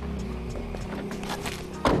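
Background music with a single loud thud near the end: the driver's door of a Shineray Jinbei mini truck cab being shut.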